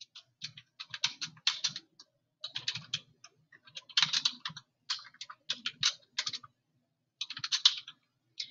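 Typing on a computer keyboard: quick runs of keystrokes in several bursts with short pauses between them, as a short line of text is typed.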